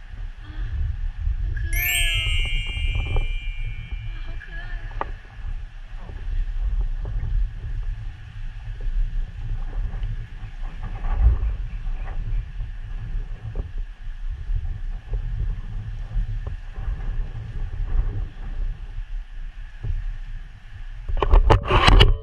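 Wind buffeting the camera's microphone in a steady low rumble, with a bright chime about two seconds in and a short loud clatter near the end.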